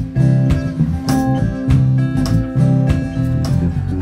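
Acoustic guitars and bass playing a steady blues vamp, with strums falling about twice a second over held low bass notes.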